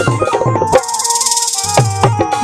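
Instrumental break in Rajasthani devotional bhajan music: hand-drum strokes under held melody notes. About a second in, the drumming drops out briefly under a fast, shimmering high rattle, then the drum strokes come back near the end.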